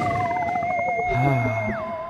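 Electronic sci-fi intro sounds: a warbling, theremin-like tone holds steady while another tone glides downward, and a high tone drops in pitch near the end.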